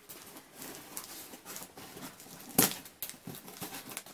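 Corrugated cardboard box being opened by hand: flaps rustling and scraping as they are pried up, with one sharp, louder crack about two and a half seconds in.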